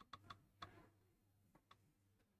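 Near silence broken by a few faint, irregular clicks, several in the first second and one more near the end.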